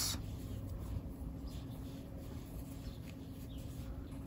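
Faint rustling and light scratching of cotton twine being drawn through stitches with a crochet hook, over a low steady hum.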